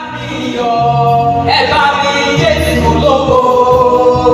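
A man and a woman sing a gospel song into microphones, in long held notes. The sound fades in at the start and stays loud.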